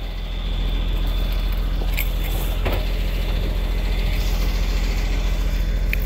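Crane truck's diesel engine idling steadily, a low even rumble that keeps the truck-mounted crane's hydraulics running.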